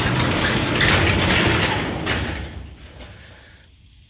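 Sectional garage door being pushed up by hand, its rollers rumbling and rattling along the metal tracks. The noise fades away over the second half.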